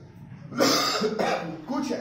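A man coughs once, sharply, about half a second in, and then resumes speaking.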